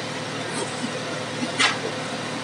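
Steady background noise with a faint constant hum, and a short hiss about one and a half seconds in.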